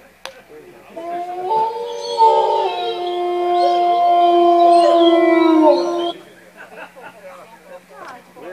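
Amplified electric guitars sustain a chord of several held notes, with some notes stepping to new pitches. The chord rings for about five seconds and then stops together.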